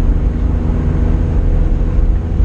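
Steady engine drone and road rumble heard from inside a truck's cab while it cruises along the highway, holding an even pitch with no change in revs.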